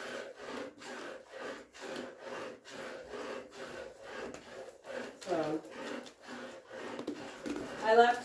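Hand-milking a goat: streams of milk squirting into a metal pail in a steady rhythm, about two squirts a second.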